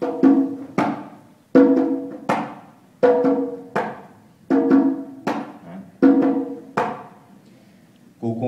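A pair of conga drums played by hand in the tumbao rhythm, with the slap stroke brought out. About ten ringing strokes fall in pairs that repeat roughly every second and a half.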